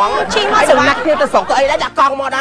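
Speech only: two women talking back and forth.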